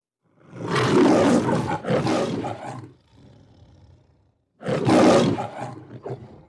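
Lion roaring over the MGM studio logo: a long roar in two pulls starting about half a second in, then a second roar about five seconds in.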